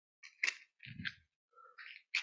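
A few light clicks and handling sounds from a matchbox and a spent match being handled and set down on a glass tabletop, with one sharp click about half a second in.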